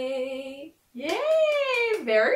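A woman's unaccompanied singing voice holding the last word of a sung line at a steady pitch, stopping under a second in. After a brief silence, one long exclamation from her that rises and then falls in pitch.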